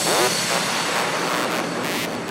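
Electronic dance track in a break with no beat: a sustained wash of synthesized white noise, like a whoosh, with a short falling sweep at the start, slowly fading.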